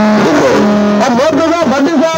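A man's voice singing or chanting loudly through horn loudspeakers. It holds two long notes in the first second, then slides up and down in pitch.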